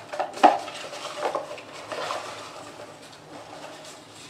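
A hand rummaging through paper message slips in a small cardboard box: rustling with a few light, irregular knocks and clicks, busiest in the first two seconds and quieter after.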